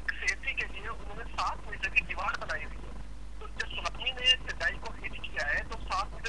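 A person speaking over a telephone line.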